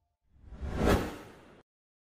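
Whoosh sound effect of an animated logo sting: a single rushing swish that swells to a peak just under a second in, then fades and cuts off suddenly about a second and a half in.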